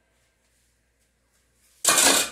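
Near silence, then near the end a sudden short burst of rushing, hiss-like noise.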